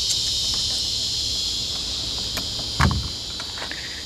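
A pocket knife working at a Rhino Hitch's removable ball mount: faint metal clicks, then one loud clunk near the end. A steady chorus of insects runs underneath.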